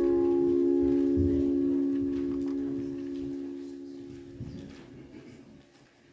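A chord held on an electronic keyboard, several steady notes sustained and slowly fading away until it dies out about five seconds in.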